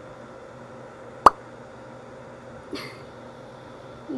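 A single sharp click about a second in, then a faint short hiss near three seconds, over a low steady room background.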